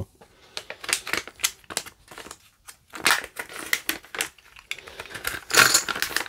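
Thick poker-chip-style game tokens clicking against each other as they are handled, mixed with the crinkling of a foil packet, with louder crinkling bursts about halfway through and near the end.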